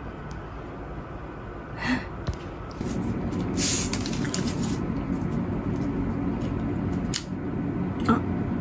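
A steady low hum that grows louder a few seconds in, with a few short rustles of food packaging being handled and a sharp snap near the end as disposable wooden chopsticks are split apart.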